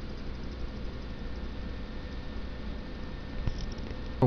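Small homemade pulse motor running steadily, its magnet rotor spinning: a quiet steady hum with a faint tone over hiss.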